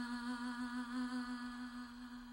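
A woman's voice holding one long, steady note with a slight vibrato, fading toward the end: the closing note of the song.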